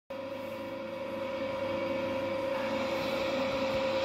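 A single steady drone note, held without a break and slowly growing louder, over a faint hiss: the drone that sets the pitch before the singing begins.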